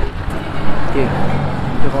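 A man speaking a few short words over a steady low rumble of background noise.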